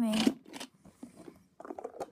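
A spoken word, then a low pause with a few faint clicks and rustles from small plastic toy wheelie bins being handled on carpet, more of them near the end.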